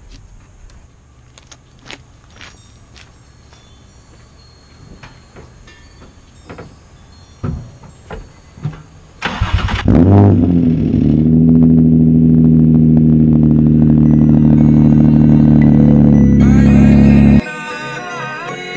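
After several seconds of small clicks, the Nissan 350Z's 3.5-litre V6 cranks and catches about nine seconds in. On this cold start it flares and then settles into a steady, loud idle. The engine note stops abruptly near the end.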